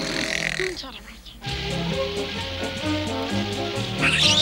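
A cartoon snore from a sleeping Smurf. Light background music with a bouncy bass line starts about a second and a half in.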